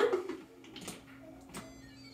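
Two light clicks of a plastic lid being pressed onto a blender jar, over a steady low hum.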